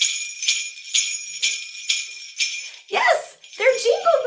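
Handheld jingle bells on a small handle being shaken, a bright ringing with a fresh jangle roughly twice a second; the shaking stops near the end as a woman's voice begins.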